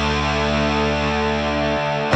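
Heavy metal recording in an instrumental passage: a distorted electric guitar chord held and ringing over bass, with no drum hits. It cuts off shortly before the end.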